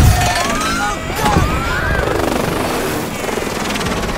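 Film soundtrack of a helicopter crashing: a heavy impact at the start, then helicopter rotor and engine noise mixed with shouting voices and orchestral score.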